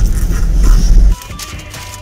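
A loud, low rumbling sound effect lasting about a second that cuts off suddenly, followed by soft background music holding a few steady notes.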